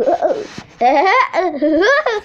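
A child laughing in a few high, squealing bursts that rise in pitch.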